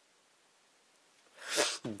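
Near silence, then a short, sharp intake of breath about a second and a half in, just before a man starts speaking.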